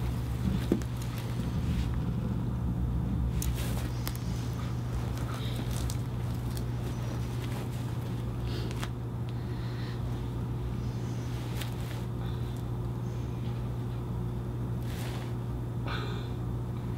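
Steady low hum of room tone, with a few faint scattered clicks and rustles and a small knock near the start.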